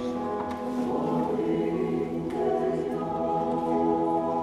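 Mixed choir of men's and women's voices singing sustained chords, moving to a new chord about two seconds in.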